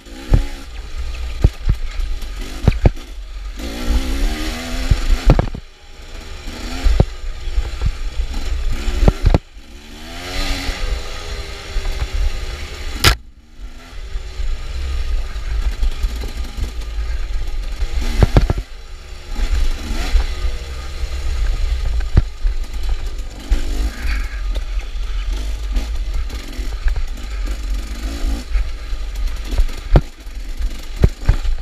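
KTM dirt bike engine revving up and down again and again under hard riding, with a heavy low rumble of wind and bumps on the microphone. Several sharp knocks come through as the bike goes over the rough trail.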